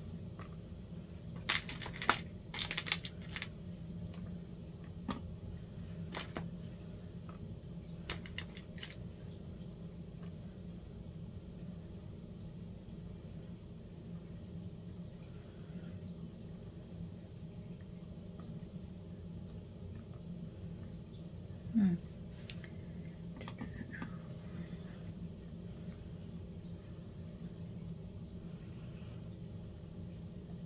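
Small hard clicks and rattles of wax seal beads being picked out of plastic storage trays and dropped into a silicone mat. The clicks are clustered in the first several seconds and sparse after that, over a steady low hum.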